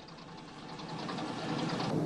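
Piston aircraft engines of a bomber formation droning with a fine rapid pulsing, growing steadily louder.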